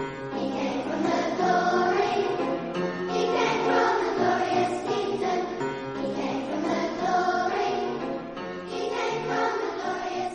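Children's choir singing, in long held notes.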